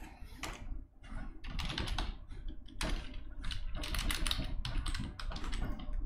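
Typing on a cheap wireless computer keyboard: a run of quick key clicks, sparse in the first second, then fast and steady.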